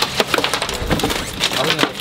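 Irregular clicks and knocks from large fish being handled and shifted in a plastic bucket, with low voices underneath.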